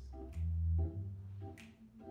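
Blues-groove music playing: a steady bass line under repeating keyboard chords, with a sharp hit on the beat about every second and a quarter.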